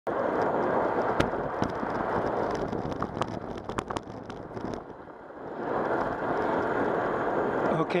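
Rushing noise of a bicycle in motion: wind on the ride-mounted camera's microphone and tyres rolling on asphalt, with scattered sharp clicks. It eases off for about a second midway, then picks up again.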